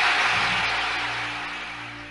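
A smooth hissing noise swell, like an outro transition whoosh, fading away steadily. A low ambient music drone comes in underneath it.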